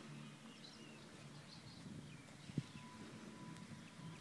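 Faint outdoor quiet with a few distant bird chirps and a single soft knock a little past halfway.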